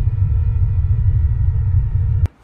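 Deep, steady low rumble: a suspense drone on a horror short film's soundtrack.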